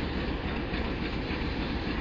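Steady low rumble of a train on the railway, even and without distinct beats, horn or squeal.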